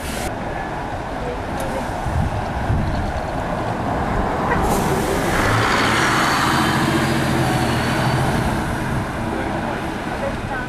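Diesel single-deck bus pulling past close by, its engine note and a faint high whine building from about halfway through and loudest in the latter half, over steady street traffic noise.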